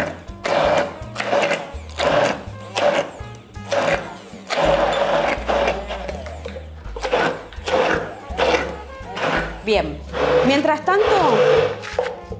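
Hand-held immersion blender whirring in short bursts, about two a second, with one longer run in the middle. It is puréeing corn kernels with cream cheese into a thick paste.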